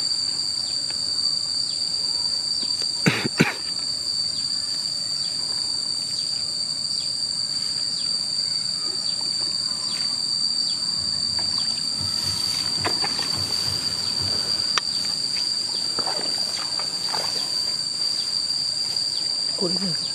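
Steady high-pitched insect drone, two even tones held throughout, with a sharp knock about three seconds in and faint splashing at the water's edge.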